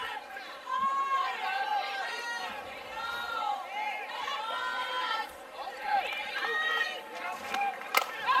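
Ballpark crowd and players' voices: many overlapping shouted calls and chatter from the stands and dugout while the batter waits for the pitch. A single sharp crack comes right at the end.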